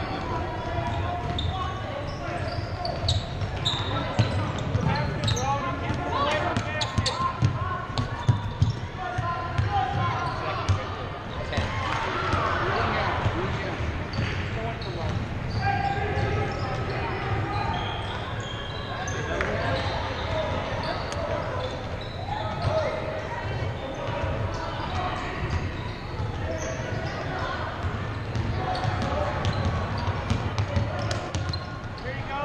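A basketball being dribbled and bouncing on a hardwood gym floor, a run of sharp knocks, with indistinct shouting and chatter from players and spectators.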